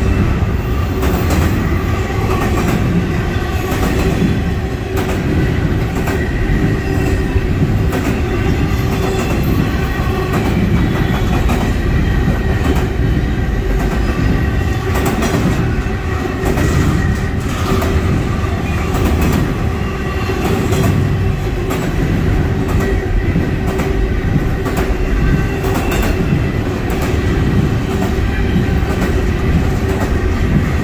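Double-stack intermodal container well cars rolling past at close range: a steady, loud rumble of steel wheels on rail with a running clatter of clicks as the wheels cross rail joints.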